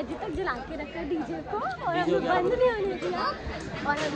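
Speech: a woman talking, with chatter from other voices.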